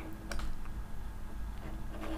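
Faint light clicks and taps of a stylus on a drawing tablet as lines are drawn, over a low steady hum.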